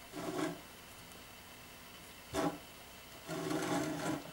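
Handling noise from a plastic Rainbow Loom on a wooden tabletop. There is a soft rub near the start, a single sharp knock a little past halfway, and a longer scraping rub near the end.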